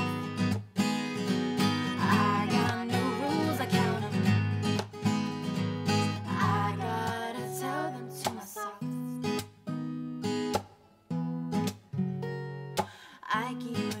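Acoustic guitar strummed and picked in a slow pop-ballad accompaniment, with a woman's singing voice over the first half. After that the guitar plays on alone in sparser, sharp strums with short gaps.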